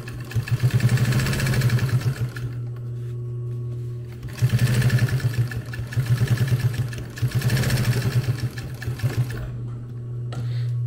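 Industrial sewing machine stitching in three quick runs, with short pauses while the work is turned; between runs its motor keeps humming steadily.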